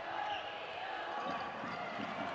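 A basketball being dribbled on a hardwood gym floor, faint, over the low steady background noise of the gym.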